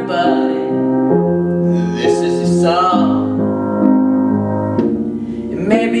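Upright piano playing slow sustained chords while a young male voice sings a ballad melody over them, with long held notes.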